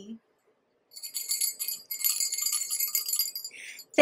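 Small jingle bells shaken, starting about a second in and stopping just before the end.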